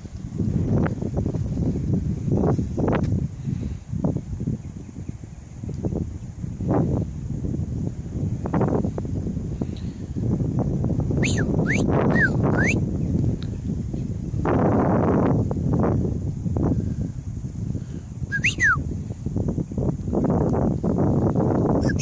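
Wind buffeting a phone's microphone outdoors, with a few short, sharp bird calls about halfway through and once more near the end.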